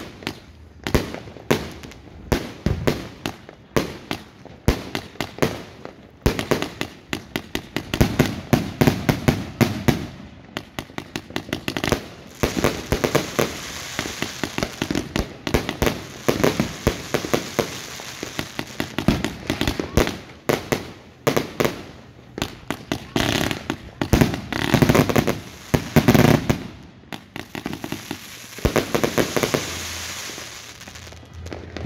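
The Batman 110-shot firework cake firing in rapid succession: shots thump up and burst several times a second, with crackling from the breaking stars filling the gaps between them.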